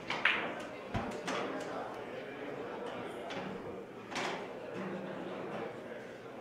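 Sharp clicks of carom billiard balls striking each other and the cushions, a few in the first second or so and another about four seconds in, over a low murmur of voices in a billiard hall.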